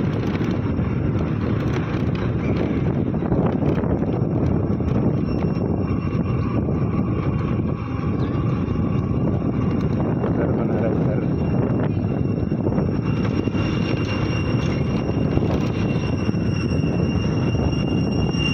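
Steady low rumble of a moving vehicle with wind noise on the microphone. A thin, steady high tone joins about two-thirds of the way through.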